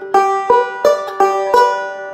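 Five-string resonator banjo picked with fingerpicks, fretted high up the neck: a run of about five bright ringing notes, roughly three a second.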